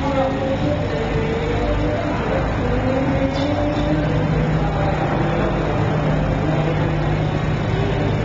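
Steady low background rumble with faint distant voices, and a low steady hum that comes in about halfway through.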